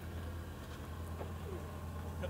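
A steady low hum, with a few faint short bird calls over it.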